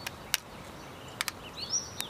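Sharp plastic clicks from a mobile phone being handled as its back and battery are worked at: one click near the start and a quick pair about a second later. Birds chirp briefly near the end over steady outdoor background noise.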